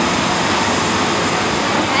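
Electric blower of an airflow exhibit running, a steady rush of air.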